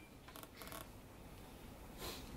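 Near silence: faint room tone, with a few soft clicks in the first second.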